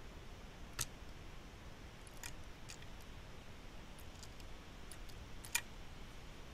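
Screwdriver tightening the small screws that hold the solenoid switch board in a Beogram 4000 turntable: a few faint, scattered metal clicks, the clearest near the end.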